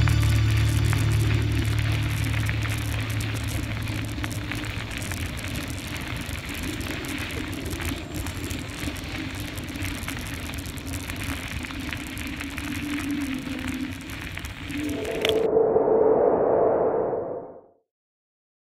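Music fades out at the start, leaving a steady crackling hiss of wind and tyres rolling on a gravel trail from a moving bicycle. Near the end a louder, duller rushing swell rises and then fades to silence.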